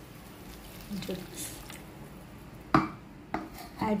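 Wet ground coconut paste being tipped and scraped from a mixer-grinder jar into a frying pan, with two sharp knocks against the pan in the last second and a half.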